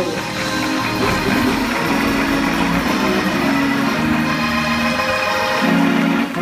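Live church music playing held chords, with people clapping along.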